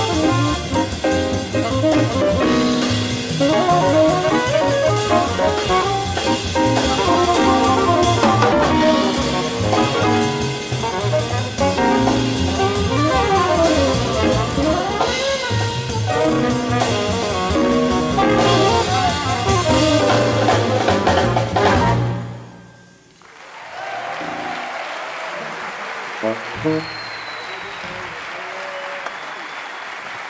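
Live jazz quintet of two tenor saxophones, piano, upright bass and drum kit playing, then stopping together sharply about three-quarters of the way through. Audience applause follows the final note.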